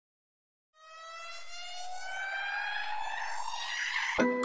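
A riser sound effect: one pitched tone with overtones gliding slowly upward under a hiss, like a siren winding up. It fades in about a second in and grows steadily louder.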